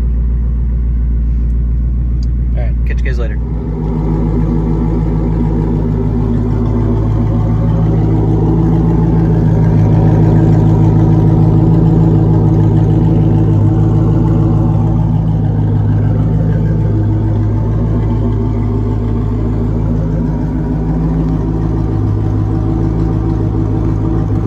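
A 2000 Pontiac Firebird Trans Am's LS1 5.7-litre V8 idling steadily through an SLP LM1 exhaust as it warms up after a cold start. It is heard from inside the cabin at first, then from behind the car at the tailpipe from about four seconds in, fuller and louder there.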